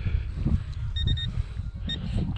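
Three quick, high electronic beeps from a metal detector about a second in, and one more near the end, over wind rumbling on the microphone.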